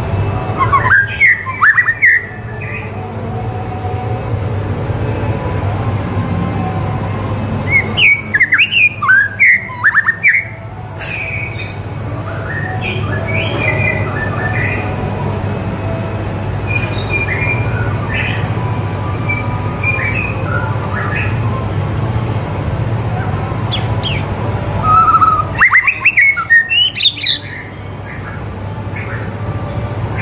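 White-rumped shama (murai batu) singing: three loud bursts of rapid whistled notes, about a second in, from about eight to eleven seconds, and again near the end, with softer short chirps and phrases between. A steady low hum runs underneath.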